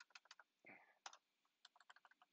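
Faint clicking of computer keyboard keys, typed in quick irregular runs as a short line of code is entered.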